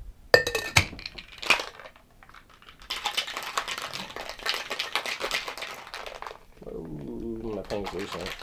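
Ice rattling hard and fast inside a tin-on-tin Boston cocktail shaker being shaken for about three and a half seconds, after a few sharp knocks as the shaker is closed.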